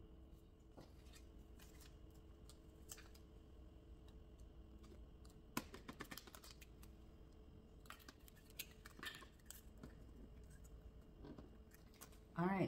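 Near silence with faint small clicks and rustles of plastic plant-marker labels and seed packets being handled and set into the pods of a countertop hydroponic garden, over a faint steady hum. The clicks come in a cluster about halfway through and again a couple of seconds later.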